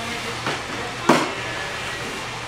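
Product packaging being handled on a trolley: two short sharp sounds, the second louder, about half a second apart, over a faint steady hum.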